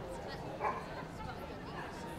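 A dog barks once, a single short bark a little over half a second in, with people talking in the background.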